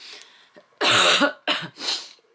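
A woman coughing three times, one longer cough followed by two short ones.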